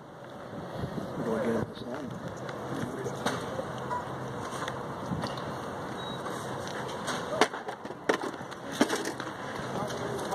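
Faint distant voices over steady outdoor background noise, with a few scattered sharp clicks and knocks.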